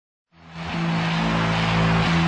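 Motorcycle engine running steadily as the bike rides along, fading in a moment after the start.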